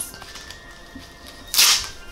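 One short, sharp ripping sound about one and a half seconds in, over quiet background music.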